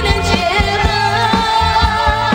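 A female singer sings a Mandarin pop ballad with a live band, one long sung note held over a steady drum beat.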